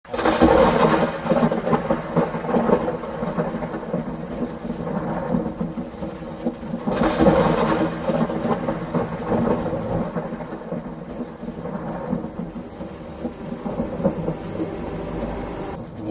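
Thunderstorm sound: steady rain with rolls of thunder, the loudest near the start and about seven seconds in, over a steady low drone.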